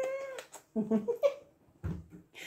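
A ginger kitten's single drawn-out meow, rising at the start and then held, as it protests at being hugged and kissed. A woman laughs after it.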